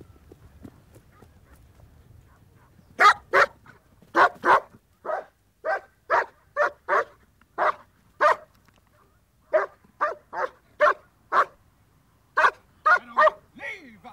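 German Shepherd police dog barking repeatedly, about twenty barks at roughly two a second. The barking starts about three seconds in.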